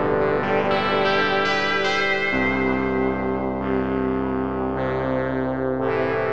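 FB-3200 software synthesizer, an emulation of the 1978 Korg PS-3200 polyphonic synth, playing its "Dreamscape" pad patch: held, sustained chords that change about two seconds in and again near the end.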